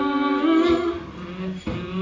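A woman's voice humming a slow, wordless melody over a steady low hum, pausing briefly near the end.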